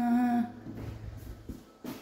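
A woman humming a little fanfare tune ("dun dun na, dun dun dun") and holding its last note, which ends about half a second in. After that there is quiet room sound.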